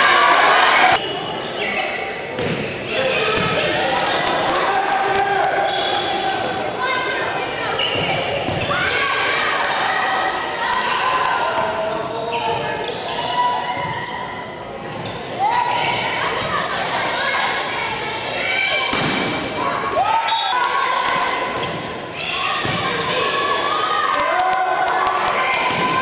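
Volleyball rallies in a gymnasium: the ball struck again and again and hitting the court in sharp, echoing smacks, over the shouts and talk of players and spectators.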